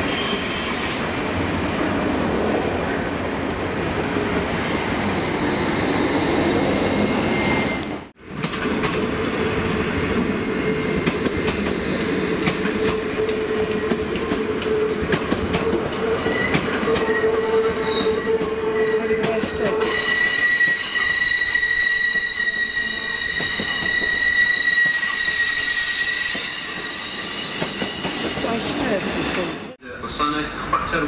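Great Western Railway Hitachi intercity train running along the platform with a steady rumble and whine. In the second half its wheels give a high, steady squeal for about six seconds.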